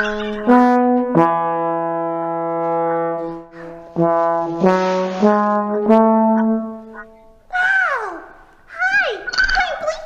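A tenor trombone plays a short phrase of sustained notes: a long held note, then several changing notes. It stops about seven seconds in, and a high voice with swooping pitch follows near the end.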